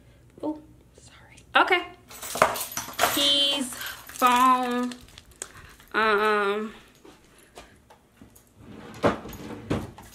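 Several short wordless vocal sounds, each under a second, with a few clicks and knocks from things being handled.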